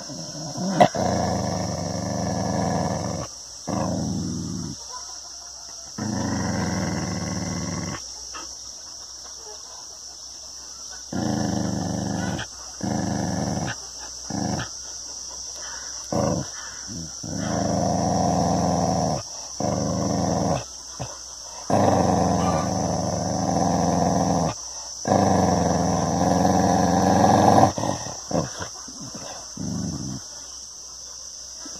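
A dog growling at its own reflection in a mirror: a series of low growls, each one to three seconds long, with short pauses between them.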